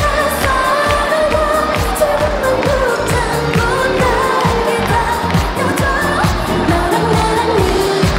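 Asian pop song playing: a sung melody over a steady drum beat.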